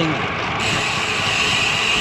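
Steady rushing wind and road noise on the action camera of a moving road bike; a steady high-pitched hiss joins in about half a second in.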